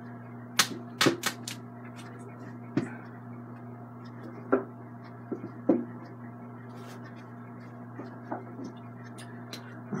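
Scattered clicks and knocks of paint tubes and supplies being handled: a quick cluster in the first two seconds, then single ones every second or two. A steady low electrical hum runs underneath.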